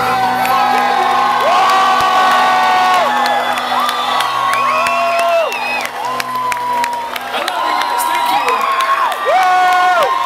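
Large concert crowd cheering and whooping, with many long held shouts overlapping, and scattered claps and whistles. A low held note of music from the stage dies away about seven seconds in.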